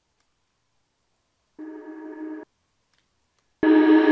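A reversed, reverb-drenched vocal sample auditioned in a DAW, making a reverse-reverb riser. A faint held vocal tone sounds for under a second about halfway through, then after a short silence a loud sustained vocal swell starts abruptly near the end.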